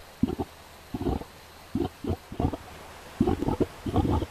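Volcanic mud pot bubbling: gas rising through thick hot mud and escaping in a string of short, low gurgles, about six in four seconds at uneven intervals.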